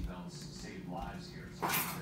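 Faint, indistinct talking, then a short, loud breathy or rustling burst about one and a half seconds in.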